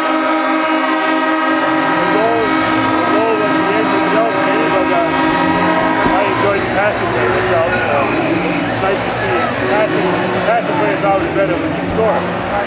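Arena goal horn sounding one steady chord over a cheering crowd, signalling a home-team goal; the horn cuts off about six and a half seconds in and the crowd keeps cheering.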